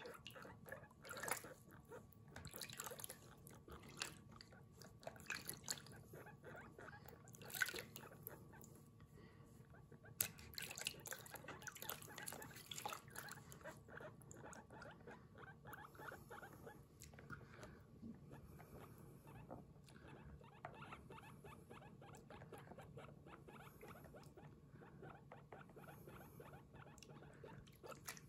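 Water splashing and hands rubbing a wet guinea pig's fur in a plastic basin, in a quick run of soft strokes that are busiest in the first half. Faint guinea pig squeaking (the 'puipui' call) runs under the washing.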